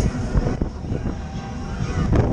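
Low, uneven rumble heard from on board a spinning Twister fairground ride, with wind buffeting the microphone.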